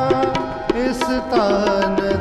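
Sikh kirtan accompaniment: harmonium chords holding steady under a running tabla rhythm. The tabla's bass drum slides upward in pitch near the start.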